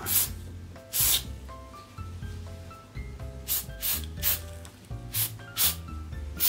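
Aerosol silicone spray (dry type) hissing in a series of short bursts from the nozzle into a folding table's hinge joint, lubricating the stiff movable part: two bursts near the start and five more in quick succession in the second half.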